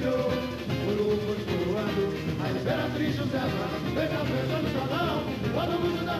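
A samba-enredo, the school's parade samba, sung by voices over the samba school's band and percussion, running continuously at a steady level.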